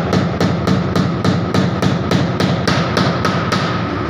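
A hammer tapping small nails into pasted wooden tiles, in an even run of sharp strikes about three or four a second that stops shortly before the end, over a steady low hum.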